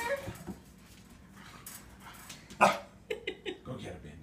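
A small dog barking at the crate: one loud, sharp bark about two and a half seconds in, then a few shorter, quieter yips.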